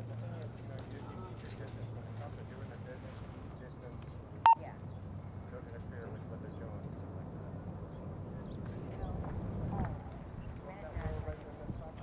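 Faint outdoor background with a steady low hum that fades away. There is one short, sharp click about four and a half seconds in, and faint muffled voices near the end.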